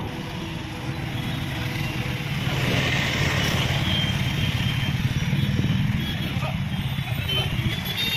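Truck engine running with a steady low rumble, heard from inside the cab while the truck moves slowly through traffic.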